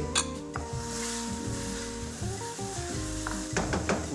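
Chopped onions and garlic sizzling in a hot wok as they are stirred, with a few sharp knocks of the wooden spoon against the pan just after the start and again near the end.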